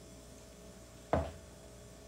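A plastic measuring jug set down on a wooden countertop: a single knock about a second in. Otherwise faint room tone with a low steady hum.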